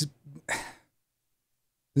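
A man briefly clears his throat about half a second into a pause in his speech.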